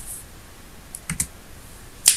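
A few quiet clicks close together about a second in, computer keys being pressed, over faint room noise.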